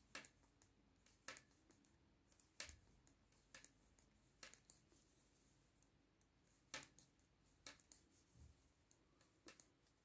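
Faint, sharp clicks of metal circular knitting needles as stitches are knit, coming irregularly about once a second.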